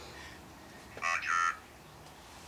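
An Ovilus III ghost-box device speaks one word, 'water', in a thin, tinny synthesized voice through its small speaker. It comes about a second in and lasts about half a second, in two short syllables.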